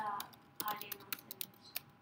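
Typing on a computer keyboard: a quick, irregular run of keystroke clicks as Japanese text is entered.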